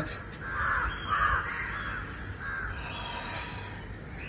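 A crow cawing, three or four caws in the first three seconds.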